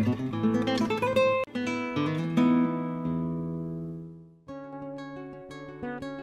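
Acoustic guitar music: a run of plucked notes, then a chord left to ring and die away about four seconds in, after which a quieter passage begins.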